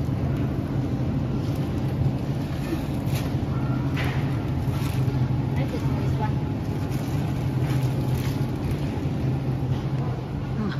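Steady low hum of supermarket refrigeration equipment at an open meat display case, with a few faint rustles and clicks from plastic-wrapped meat packages being handled.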